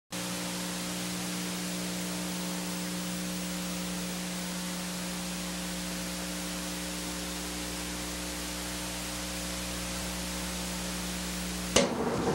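Steady hiss with a low electrical hum running under it, unchanging throughout. It is the noise floor of the recording, with no program sound.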